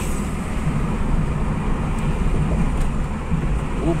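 Steady low rumble of a car being driven, heard from inside its cabin.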